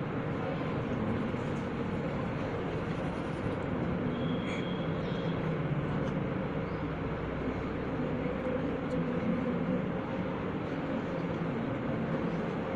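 Steady room noise in a crowded classroom: a constant hum under a low murmur of voices from the watching schoolboys, with a brief high tone about four and a half seconds in.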